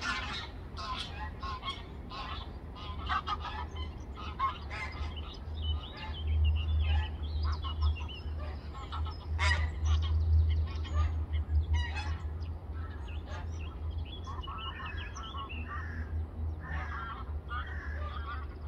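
Geese honking on and off in short, repeated calls, over a steady low rumble.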